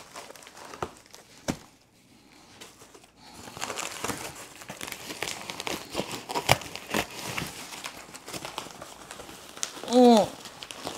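Cardboard box inserts and crumpled packing wrap being handled and pulled out of a shipping box. There are a few scattered crackles, a brief lull, then a dense run of crinkling and crackling from about three seconds in.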